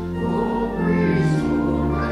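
Church organ accompanying a group of voices singing a sung response, with sustained chords changing about every half second.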